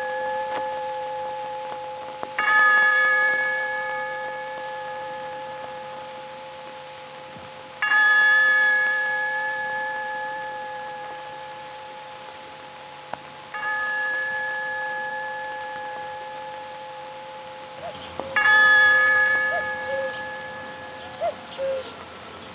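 A bell struck slowly four times, about every five and a half seconds, each stroke ringing out with several overtones and fading away before the next.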